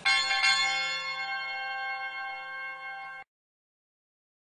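Hanging metal bell struck just after the start and left ringing, a chord of steady tones slowly fading. The ringing cuts off suddenly after a little over three seconds.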